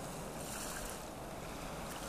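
Seaside ambience of waves washing in, mixed with wind. It is a steady hiss that swells briefly about half a second in.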